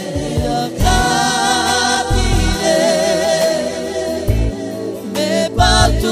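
Romani pop song: a sung vocal line held on long notes with vibrato, over an instrumental backing with low bass notes.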